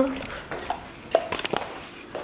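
A few short, light clicks and knocks, the sharpest about a second in, with only low background noise between them.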